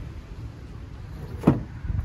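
Wooden slatted sofa-bed frame being pulled out on its slide, with one sharp loud wooden knock about one and a half seconds in and a couple of smaller knocks near the end, over a steady low rumble.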